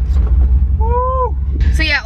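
Steady low car engine and road rumble heard from inside the cabin as the car pulls slowly forward. A short voiced 'ooh'-like sound rises and falls about a second in, and a woman starts talking near the end.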